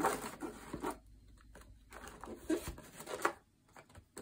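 Quiet handling sounds at a desk: a pen marking a paper checklist and packets of diamond-painting drills being moved about in a plastic storage box, giving soft rustles and a few light clicks and taps.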